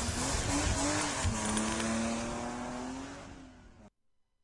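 Car engine sound effect with tyre squeal, its pitch wavering and then holding, fading out and cutting off just before the end.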